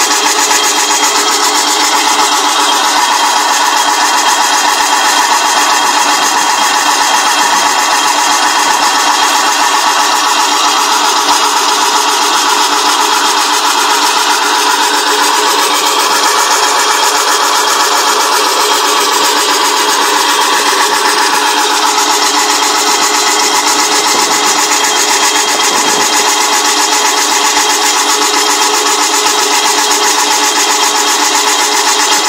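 Prestressing strand pusher machine running, its electric motor driving the rollers that feed steel PC strand into the duct. The sound is a loud, steady mechanical drone with several held tones.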